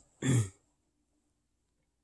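A man clears his throat once, briefly, just after the start.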